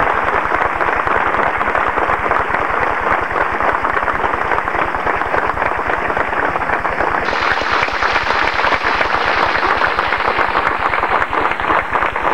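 A crowd applauding: dense, steady hand clapping.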